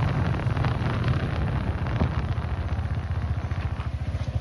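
Motorcycle engine running steadily as it is ridden, a fast low pulsing throb, with wind rushing over the microphone.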